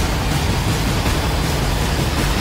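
Title-sequence sound effect: a loud, steady rushing noise with a deep rumble underneath.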